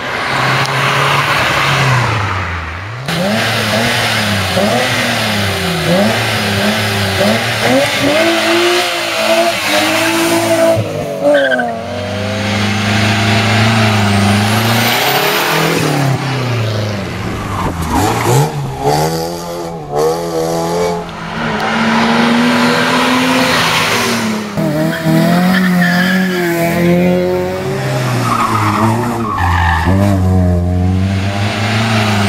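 Competition cars' petrol engines revving hard as they accelerate up a hill climb one after another, the pitch climbing and dropping repeatedly with each gear change.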